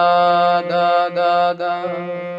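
Harmonium playing a single note four times in a row, each held for about half a second, over a sustained low tone.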